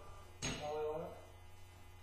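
A single sharp metallic click about half a second in, a tool or part knocking against the engine's cylinder head and valvetrain, followed by a brief muttered word.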